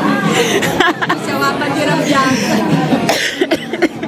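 Several adults talking over one another and laughing around a dining table.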